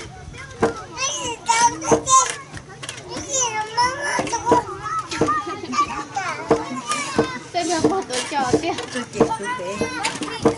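Children chattering and calling out in high voices, with repeated dull thuds from a wooden lever rice pounder's pestle striking rice in a stone mortar.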